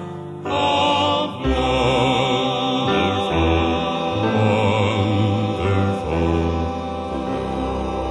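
Southern gospel male vocal group singing a hymn in close harmony, long held chords with vibrato over a low bass accompaniment, from a 1960s vinyl LP recording.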